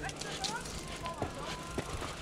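Mountain bike rolling along a dirt trail: a low, steady rumble of tyres on dirt, with a couple of light knocks from the bike over bumps.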